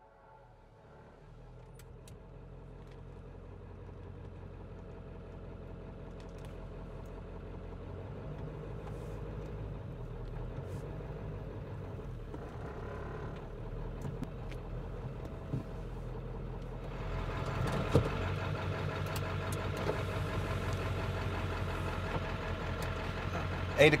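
Pickup truck engine running, growing louder as the truck approaches and pulls up, then idling steadily, with a single sharp click about three quarters of the way through.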